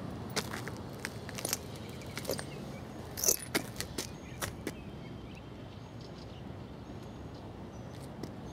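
Footsteps over rubble and debris: an irregular scatter of sharp clicks and crunches for the first few seconds, then only a steady faint outdoor background.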